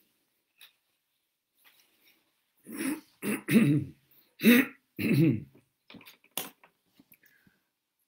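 A man clearing his throat and coughing several times in quick succession, starting a little under three seconds in and lasting about three seconds, followed by a few faint clicks.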